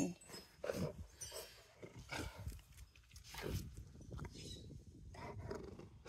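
Rottweiler growling low in several short rumbles spread over a few seconds.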